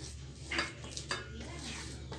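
Fingers scraping mashed potato off a steel plate into a ceramic bowl: faint scraping with a few light clinks of dish against dish.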